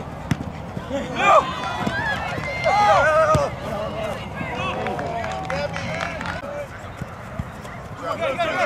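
Players shouting and calling out to each other across a soccer field, loudest in the first half and dying away near the end, with a few short sharp knocks in between.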